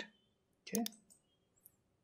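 A couple of quick, sharp computer mouse clicks about three-quarters of a second in.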